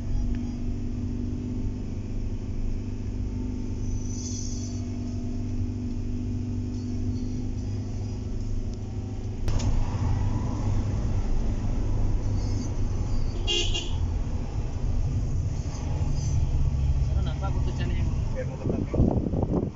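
Cabin noise of a Toyota car on the move: a steady low engine and road drone. About halfway through, a sharp click marks a change in the drone, and about three-quarters of the way through a short high-pitched sound stands out briefly.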